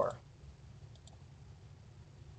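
A few faint computer mouse clicks, a pair of them about a second in, over quiet room tone, with the last word of a man's voice at the very start.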